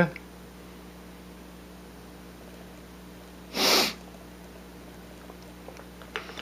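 One short rush of breath a little past halfway, over a low steady hum.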